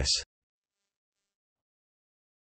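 A synthesized text-to-speech voice ends the last word of a heading in the first quarter second, followed by digital silence.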